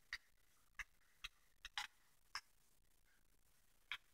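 Faint, sparse crackles of a creased one-dollar bill being opened back out flat in the fingers: about seven short, sharp ticks at irregular intervals.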